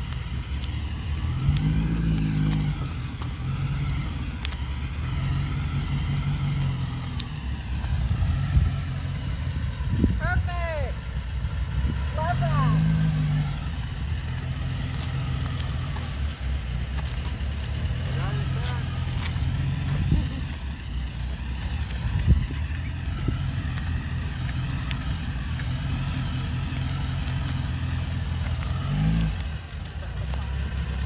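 Vintage Volkswagen Beetle's air-cooled flat-four engine running as the car creeps along at walking pace, its pitch rising and falling with the throttle a few times. A few short wavering higher tones come through around the middle.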